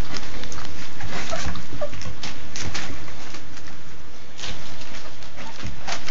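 Black Labrador retriever puppies feeding from a bowl together, with brief squeaks and grunts over a busy run of small clicks and knocks.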